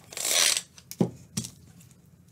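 A tape measure being pulled out and handled: a short rustle in the first half-second, then two light clicks about a second in.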